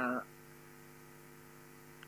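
Faint, steady electrical mains hum: a set of low, unchanging tones, heard once a drawn-out spoken 'uh' ends.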